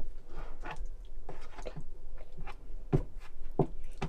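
A metal spoon tapping and scraping against a bowl during a meal of soured milk, with eating sounds: about ten irregular small clicks and knocks, the loudest near the end.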